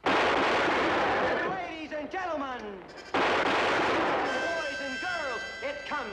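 Two pistol shots fired into the air, about three seconds apart, each loud with a long fading echo.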